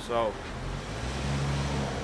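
A low, steady engine hum, as of a motor vehicle, that grows slightly louder after a man's brief spoken word.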